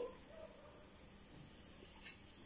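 Whole spices frying in hot sesame oil in a wok, giving a faint, steady sizzle.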